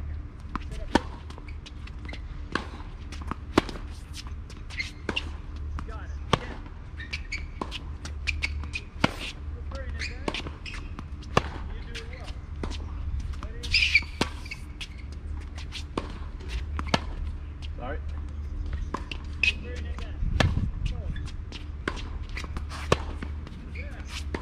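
Tennis rally on a hard court: sharp pops of racquets striking the ball, loudest on the near player's shots every few seconds, with ball bounces and sneaker steps ticking between them. A steady low hum runs underneath.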